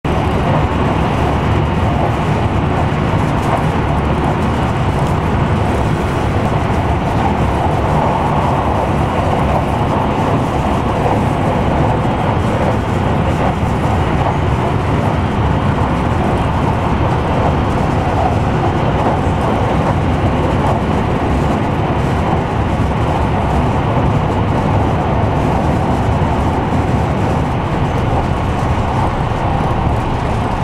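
Steady running noise of a passenger train, heard from inside the carriage.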